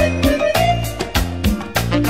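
Cumbia music with a steady beat: a bass line of about two notes a second under percussion strokes and a stepping melody line, with no singing.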